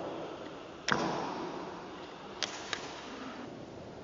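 A sharp knock about a second in, trailing off in a large hard-walled room, then two quick, lighter clicks near the middle.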